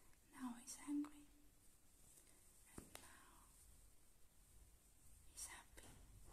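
Quiet close-up whispering, with a short soft voiced sound about half a second in, a single click near the middle and a hissy whispered burst near the end.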